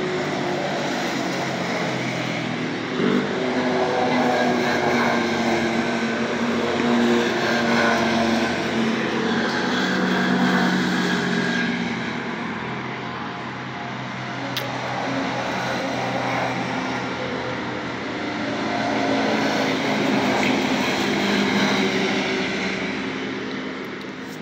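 Side-by-side UTVs driving past one after another, a continuous engine drone that swells and fades several times as each machine goes by.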